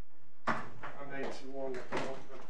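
A sharp knock about half a second in, followed by a person talking indistinctly.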